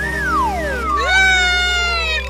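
Cartoon sound effect of swooping pitch glides that rise and fall, ending about a second in. A sustained, high-pitched, slightly falling cry follows.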